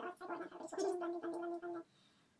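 A person's voice: a short vocal sound that ends in a steady held note and stops a little before the end.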